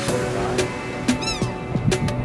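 Background music with a steady beat; about a second in, a single gull call cries out over it, rising then falling.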